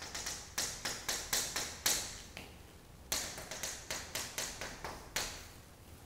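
Chalk striking a chalkboard in short, quick strokes to draw a dashed line, a run of sharp taps for about two seconds, then a second run after a brief pause.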